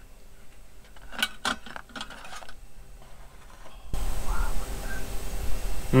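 Metal tongs and a knife clicking and scraping against plates and a frying pan while food is plated: a few short clinks. About four seconds in, a steady hiss comes up suddenly.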